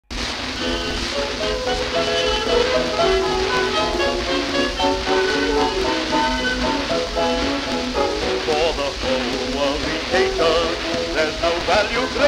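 Early-1930s dance-band fox trot played from a worn 4-inch Durium record, the band's instrumental introduction under a constant hiss and crackle of surface noise from the disc's poor condition. A male singer comes in near the end.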